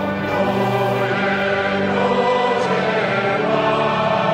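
A choir and congregation singing a slow hymn together, the notes held about a second each.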